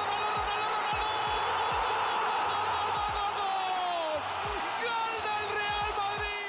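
Spanish football TV commentator's long drawn-out goal shout, one held note sliding slowly down for about four seconds and then a second long note, over a stadium crowd cheering the goal. A music beat with deep thumps runs underneath.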